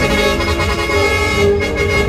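Truck air horns sounding in a long held chord, with a short dip about one and a half seconds in. Music plays underneath.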